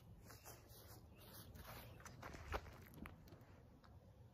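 Near silence: faint outdoor background rumble with a few soft knocks about two and a half and three seconds in.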